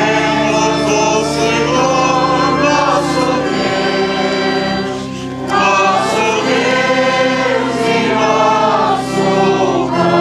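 Congregation singing a hymn together over steady held accompaniment chords, with a short break between lines about five seconds in.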